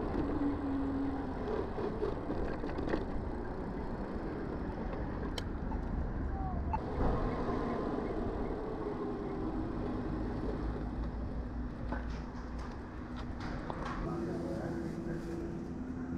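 Steady wind rush and tyre noise from an electric mountain bike ridden along paved city paths.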